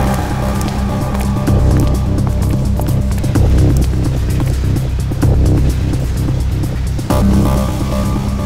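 Tense dramatic background score with a deep, low rumbling pulse; a held chord comes back in near the end.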